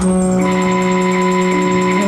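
Free-improvised music: a single low note held steady in pitch, with fainter high tones above it.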